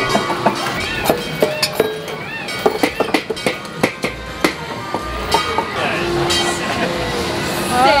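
Irregular clattering knocks from hand-worked play props: a pot fixture pulled by its chain and a hand crank that swings a row of hanging bamboo poles. The knocks come one after another at uneven spacing, over voices.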